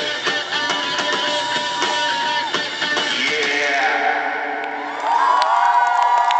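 A live rock band playing, electric guitars and bass over drums, with long sustained guitar notes. The band swells louder about five seconds in.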